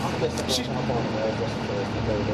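Steady low hum of an idling vehicle engine under a man's voice saying a single word.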